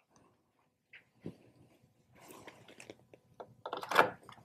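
Faint rustling and light clicks of a mains power cord being handled, then its plug pushed into a power strip, with a louder click near the end.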